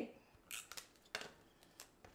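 Tape runner laying short strips of adhesive tape onto a paper cut-out: a few faint, brief scrapes and clicks.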